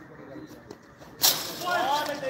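A single sharp crack of a cricket bat striking the ball a little past a second in, followed at once by a man's shout.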